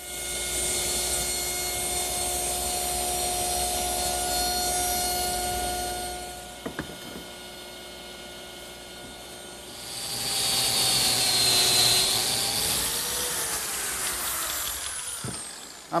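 Woodworking power tools: a saw motor runs with a steady whine for about six seconds while cutting miters. Then comes a quieter spell with a single click, and from about ten seconds in a power tool runs again, its pitch sagging and recovering as it cuts.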